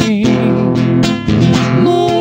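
Acoustic guitar strummed steadily while male voices sing a slow romantic song into microphones.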